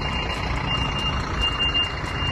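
Heavy truck's engine idling with a steady low rumble, while a thin high beep sounds twice, like a reversing alarm.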